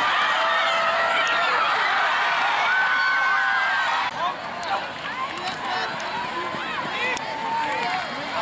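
Football crowd in the stands cheering and yelling, many voices overlapping with no words standing out. The noise drops noticeably quieter about four seconds in.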